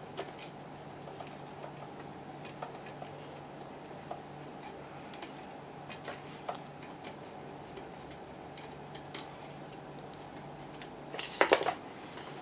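A screwdriver working small screws on a metal connector: faint scattered ticks and clicks over a steady low hum, with a louder burst of clattering about eleven seconds in.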